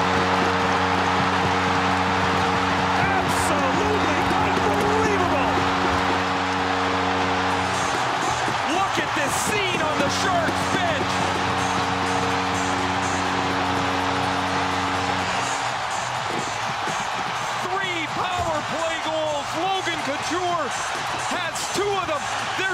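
Arena goal horn sounding in two long blasts over a cheering crowd after a home goal. The first blast stops about eight seconds in, the second cuts off about fifteen seconds in, and the crowd keeps cheering and whooping after it.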